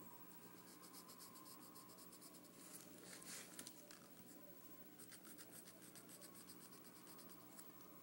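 Faint pencil scratching on paper: quick repeated strokes as lines are drawn, coming in runs with short breaks between them.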